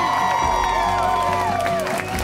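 Guests cheering and whooping, many long overlapping shouts that fall away near the end, over background music.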